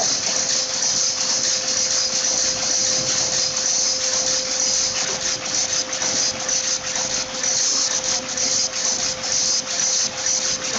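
Rapier power loom with a lappet attachment running and weaving: a loud, rapid, continuous clatter with a constant hum beneath it.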